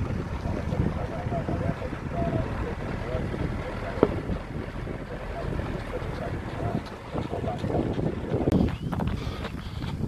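Wind buffeting a moving camera's microphone: a dense, steady rumble.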